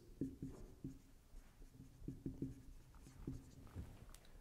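Dry-erase marker writing on a whiteboard: a faint string of short, irregular strokes as the letters are drawn.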